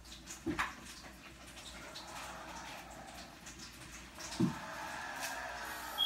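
A few light clicks and one sharper knock, over a faint steady background noise that grows slightly louder in the second half.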